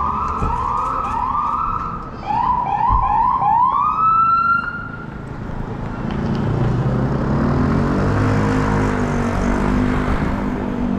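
Emergency vehicle siren sounding a series of short rising whoops, quickening briefly and ending in one longer rising tone about five seconds in; after it, steady street traffic noise.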